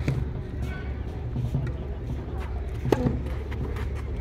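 Tennis ball impacts during a clay-court point: a few sharp racket-on-ball hits and bounces, the loudest about three seconds in.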